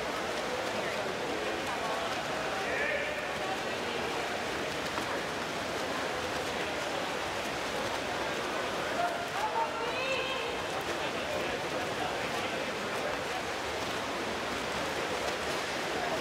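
Swimming-race ambience: a steady wash of water splashing from swimmers' strokes under crowd chatter, with brief shouts from spectators about three seconds and about ten seconds in.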